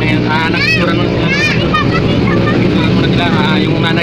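A steady low motor rumble under talking, with two short high rising-and-falling calls about half a second and a second and a half in.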